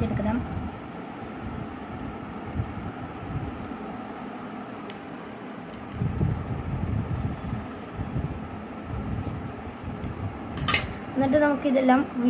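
Steel scissors snipping slits into the end of a rolled paper tube, with paper rustling as the tube is handled. A single sharp click near the end.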